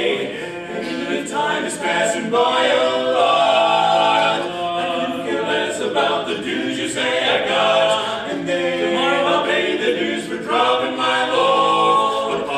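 Male barbershop quartet singing a cappella in close four-part harmony, holding chords that shift every second or so.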